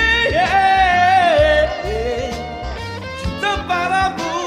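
A man singing a ballad into a microphone over a backing track. About half a second in he holds one long high note, then lets it fall away and carries on with shorter sung phrases.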